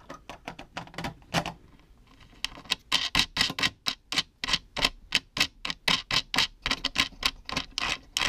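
Light, rapid clicking, sparse at first and then about five or six clicks a second, as a circuit board is fastened onto threaded mounting bolts by hand.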